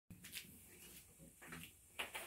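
Near silence: quiet room tone with a few faint rustles of someone moving about in the room.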